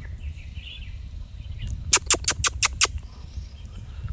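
A quick run of about six sharp clicks about two seconds in, over a steady low rumble of wind on the microphone.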